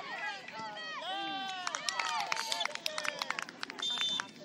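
Several voices shouting and cheering as a goal is scored, with a run of sharp claps through the middle and a short whistle blast near the end.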